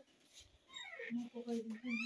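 A two-month-old baby fussing: a few short whimpers, each held on one note, beginning about a second in.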